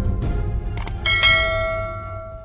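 Two quick mouse-click sound effects about three quarters of a second in, then a bright bell chime that rings on and slowly fades. This is the notification-bell sound of a subscribe-button animation, over outro music with a steady bass.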